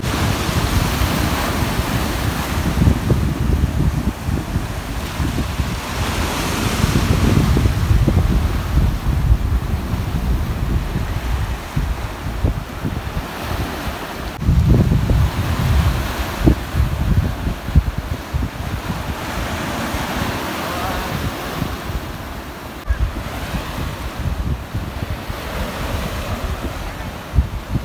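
Small waves breaking and washing across a shallow coral reef flat at low tide, the surf rising and falling in surges every few seconds. Wind buffets the microphone throughout.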